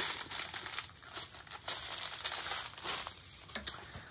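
Thin plastic packaging crinkling in irregular bursts as it is folded by hand.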